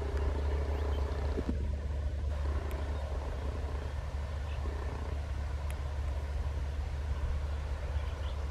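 Distant passenger train passing, a steady low rumble with a faint hum that comes and goes in the first five seconds.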